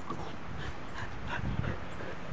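Belgian Sheepdog puppies whimpering, about five short high-pitched cries in quick succession.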